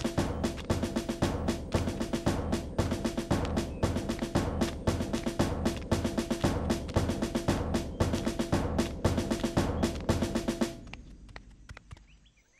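Marching drums, bass drum with snare, beating a quick steady marching rhythm over a held musical note. The drumming stops near the end.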